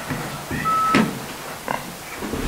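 Handling noise from a desk microphone being moved on its stand, picked up through the microphone itself: a short high tone, then a sharp knock about a second in and a smaller one shortly after.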